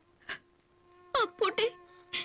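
A person's voice: three short cries with sharply gliding pitch about a second in, over a faint steady held tone in the film soundtrack.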